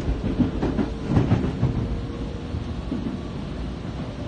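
Tokyo Metro Marunouchi Line subway train running, heard inside the carriage: a steady low rumble of wheels on rail with a faint steady hum, and a few louder clacks of the wheels between about half a second and a second and a half in.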